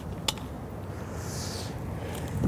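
Faint outdoor street background with a low steady rumble of traffic, one small sharp click about a quarter second in, and a brief soft rustle about one and a half seconds in as objects are handled on the pavement.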